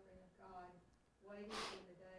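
Faint, distant speech of a person reading aloud off-microphone. A short, sharp sniff close to the microphone comes about one and a half seconds in.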